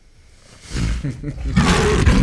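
Tiger roar sound effect that starts about half a second in and swells into a loud, rough roar lasting to the end.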